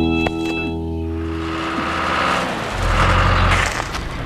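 Cartoon background music: a held, organ-like chord that fades out a little over halfway through. A noisy rumble builds under it and is loudest shortly before the end, fitting the cartoon digger's engine sound as it drives in.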